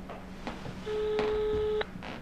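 Telephone ringback tone heard while a call rings through: one steady beep about a second long that cuts off sharply.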